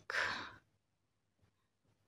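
A woman's short breath, lasting about half a second and fading out, followed by near silence.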